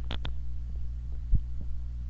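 Steady low hum of running computer fans. Two short clicks come near the start, and a brief low thump a little past halfway.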